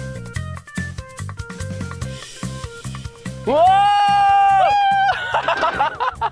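Upbeat background music with a steady drum beat. About three and a half seconds in, a man lets out a long, loud, high-pitched yell of excitement, which breaks into laughter near the end.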